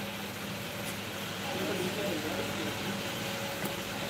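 Faint murmur of background voices in a room over a steady low hum, with no distinct event.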